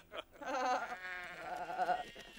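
Sheep bleating: a quavering call that starts about half a second in and keeps wavering in pitch.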